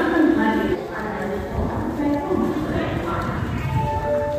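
Coaches of a passenger train rolling slowly past a platform, their wheels clattering over the rail joints in a low, uneven knocking rhythm. People's voices can be heard over it, near the start and again near the end.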